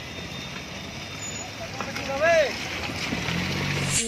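A vehicle running on a rough road, with a steady noisy rumble and a low engine hum that grows toward the end. About two seconds in there is one short call that rises and falls in pitch.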